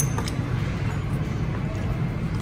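Faint crunching as crispy fried salmon skin is chewed close to the microphone, over steady restaurant room noise.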